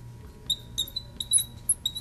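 Marker squeaking on a glass lightboard while words are written: short, high squeaks, several a second, with brief gaps between strokes.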